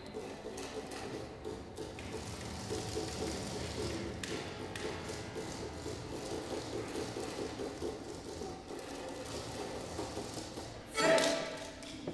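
Low, indistinct voices with scattered light taps in a live performance space. A short, loud sound comes about a second before the end.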